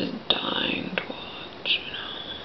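A woman speaking softly in a breathy whisper, with a short breathy sound near the end.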